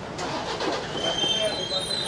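Street noise: several people talking over one another while vehicles run, with a few thin, steady high tones above.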